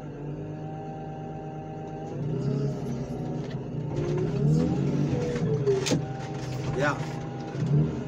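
Car crusher's engine and hydraulic pump running under load as the crusher presses down on a bundle of scrapped cars, the pitch sagging and recovering as it works. A single sharp crack of metal comes just before six seconds in.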